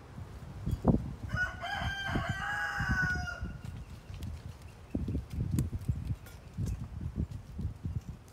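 A rooster crows once, starting about a second in and lasting about two seconds. Around it are soft thumps and rustles of hands working garden soil, with a sharp thump just before the crow.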